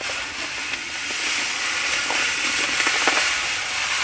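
Lawn insect-killer granules pouring from a bag into the plastic hopper of a broadcast spreader: a steady rushing hiss that builds a little over the first second.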